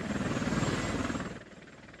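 Military transport helicopter heard from inside the cabin with the rear ramp open: steady rotor beat and engine noise, fading away about a second and a half in.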